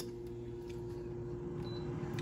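Bella Pro Series air fryer's fan running with a steady hum, and a short high beep near the end as its touch-panel time button is pressed.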